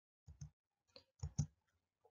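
A handful of faint, short clicks in a quiet room, in two small clusters: one early, one about a second in.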